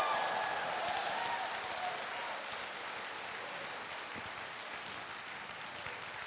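A large indoor audience applauding, with a few voices calling out in the first second or so. The applause slowly dies away.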